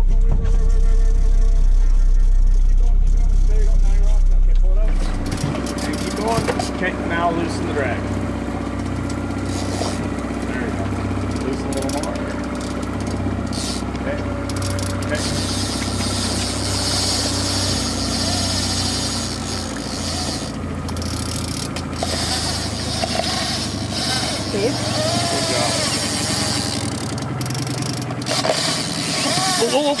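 A boat's outboard engine running steadily. Wind rumbles heavily on the microphone for the first five seconds or so, then drops away.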